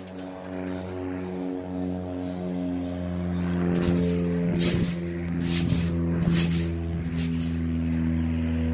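A steady low hum with a stack of overtones, holding one pitch throughout. Bursts of rustling handling noise come in about halfway through and last for several seconds.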